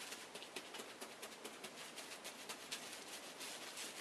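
Hands patting and pressing a wet wool felt heart on bubble wrap: faint, quick, irregular soft pats and clicks.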